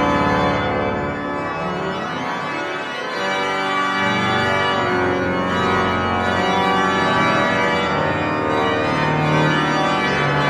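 Pipe organ played on manuals and pedals: sustained full chords, with the low pedal notes dropping away for a few seconds and returning about four seconds in.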